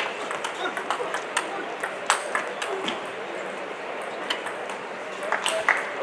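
Table tennis ball clicking off the players' bats and the table in a rally: a quick, irregular series of sharp knocks, thickest in the first couple of seconds, with a few more near the end.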